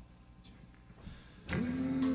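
A quiet pause on stage with a few faint clicks. About a second and a half in, the orchestra strikes up the next number, opening loudly on a held note.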